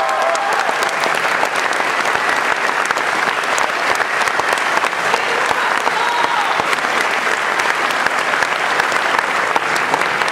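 Theatre audience applauding: many hands clapping together at an even level.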